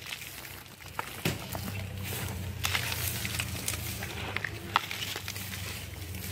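Scattered soft crackles and rustles of dry leaf litter and mulch being disturbed by hand, over a steady low hum.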